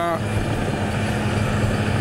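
Steady engine drone: one even, low hum that holds without change.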